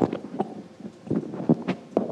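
Handling noise from a clip-on lapel microphone being turned over and repositioned: a series of irregular knocks and rubs right against the mic.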